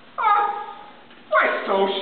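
A person's voice making two drawn-out cries that slide down in pitch, a short one near the start and a longer, wavering one from a little past the middle.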